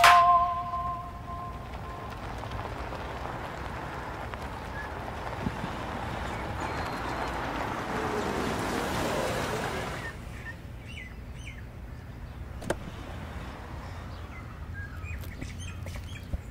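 A car driving up and coming to a stop, its engine and tyre noise swelling slightly before dropping away about ten seconds in. After that, birds chirp over quiet ambience, with a sharp click about two or three seconds later, likely a car door opening.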